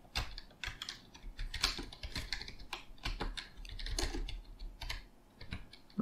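Typing on a computer keyboard: short, irregular runs of keystrokes with brief pauses between them.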